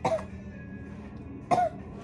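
A woman coughing into her sleeve, twice: once at the start and again about a second and a half in.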